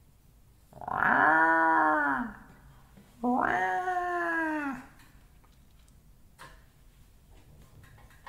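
A cat meowing twice, two long drawn-out meows that each rise and then fall in pitch.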